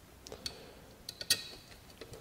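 A few faint, light clicks and taps of plastic as the new mass airflow sensor is handled and set down into its plastic air cleaner housing, the sharpest about a second and a quarter in.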